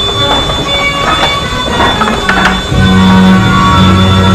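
Carousel band organ playing a tune in sustained reedy pipe tones, with drum beats. Strong bass notes come in about two-thirds of the way through.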